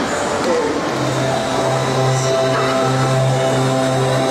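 Instrumental backing track of a pop song starting over the venue's loudspeakers about a second in, with steady held notes over a low sustained note.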